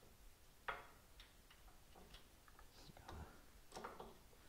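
Faint, scattered clicks and light metal taps from a Harley Twin Cam rocker arm support plate assembly being handled and lined up over the cylinder head, the sharpest click just under a second in. Otherwise near silence.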